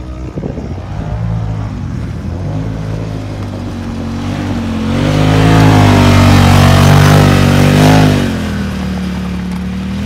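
Polaris RZR Pro XP side-by-side's turbocharged twin-cylinder engine pulling through the sand in low range, getting loud as it passes close by around the middle, the revs rising and falling. After the pass it drops back to a quieter, steady note as it drives away.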